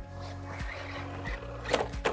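A single sharp crash near the end as a 3D-printed electric RC buggy lands hard off a dirt jump and flips onto its roof, the impact that cracks its printed chassis.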